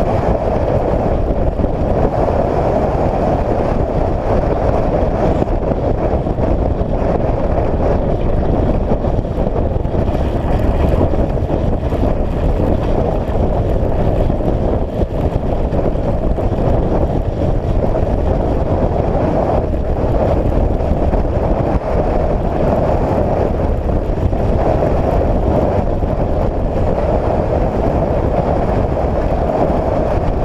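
A UTV driving steadily along a dirt trail: a continuous, even run of engine and tyre noise, with wind on the camera microphone.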